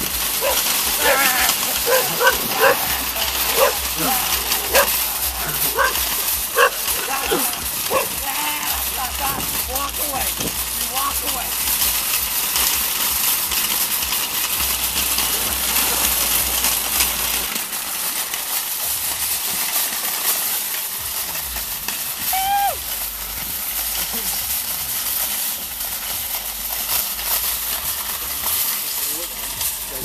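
Shopping cart rolling along a gravel road, a steady noise of wheels on stones throughout. A dog barks and yelps over and over for about the first twelve seconds, then once more later on.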